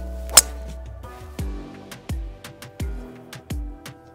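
A golf club strikes a ball off the tee with one sharp, loud crack about half a second in, over background music with a steady beat.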